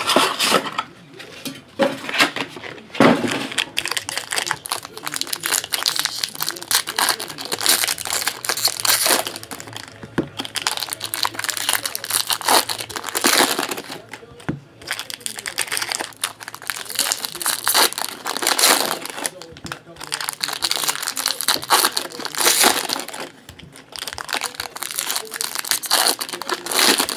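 Foil trading-card pack wrappers crinkling and tearing as the packs are ripped open and the cards handled, giving an uneven run of crackly rustles and small clicks.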